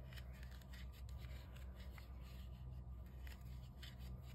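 Faint, irregular scratching and rubbing of acrylic yarn as a 4 mm crochet hook draws it through stitches, over a low steady hum.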